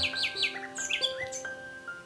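Soft background music of held notes, with small birds chirping over it in the first second or so.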